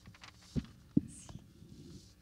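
Two dull thumps picked up by a table microphone, about half a second apart, the second louder, with faint rustling between.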